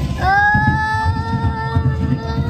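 A child's voice holding one long, steady high note, sliding up into it just after the start, over a low rumble from the children's roller coaster setting off.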